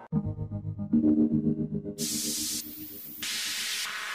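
Synthesizer-based electronic music: low, sustained synth tones with a soft pulse. About halfway through, a bright hiss of white noise comes in and switches on and off in blocks of about half a second.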